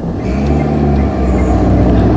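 A car engine sound effect: a steady low engine rumble that starts as the taxi pulls away.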